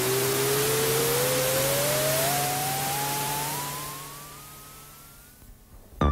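Toy rocket take-off sound effect from a children's puppet show: a loud hiss with a whistle that rises steadily in pitch over a low steady hum, fading away over the last two seconds as the rocket flies off.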